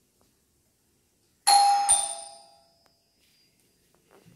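Doorbell chime ringing once with a two-note ding-dong, a higher note then a lower one less than half a second apart, starting about a second and a half in and fading out within about a second.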